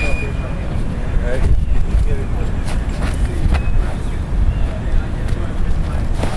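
Steady low rumble of wind on the microphone outdoors, with a few sharp knocks scattered through it.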